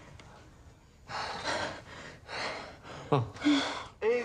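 A person breathing heavily in a run of audible breaths, with a short voiced gasp falling in pitch about three seconds in.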